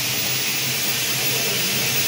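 Electric cigarette filling machine running: a steady hiss with a faint low hum under it, unbroken.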